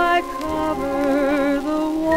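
A 1940s dance orchestra playing a fox trot, heard from a 78 rpm shellac record, with a sustained melody note that wavers with vibrato in the middle.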